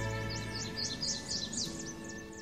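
The last held chord of a TV morning show's opening jingle, slowly fading. Starting about half a second in, a bird twitters over it in quick, repeated high chirps.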